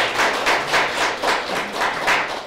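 Applause from a small group: hand claps coming evenly, about four a second.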